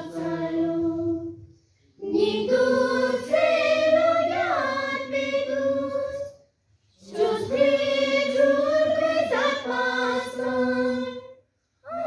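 A group of school students singing together unaccompanied, in long held phrases separated by short silent breaths: three phrases, breaking off about two seconds in and again about halfway through.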